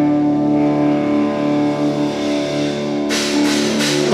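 Live rock band with overdriven electric guitars holding long ringing chords. Cymbals and drums come crashing in about three seconds in, building into the full band.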